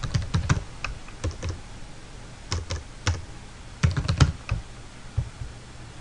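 Typing on a computer keyboard: short runs of keystrokes with pauses of about a second between them.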